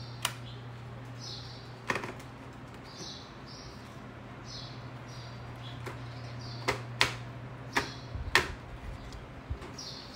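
A handful of sharp plastic clicks from a Norisk full-face motorcycle helmet's visor being lowered and handled through its ratchet steps, most of them bunched in the second half. Under them runs a steady low hum, with faint high bird chirps.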